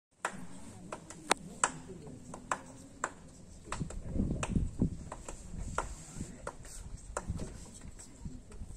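Quiet stage sounds before a piece begins: scattered sharp clicks and knocks, with a short stretch of low rustling and handling noise about four to five seconds in, over a faint steady high hiss.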